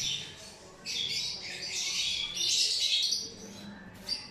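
Lovebirds squawking and chattering in a busy, irregular burst that starts about a second in and dies away near the end.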